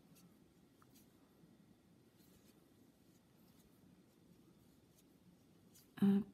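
Near silence: faint scratching and a few light ticks of a crochet hook working cotton yarn.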